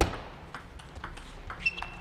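Table tennis ball clicking off rubber-faced bats and the table during a doubles rally: one sharp, loud hit with a short ringing tail at the very start, then a run of lighter, irregular ticks.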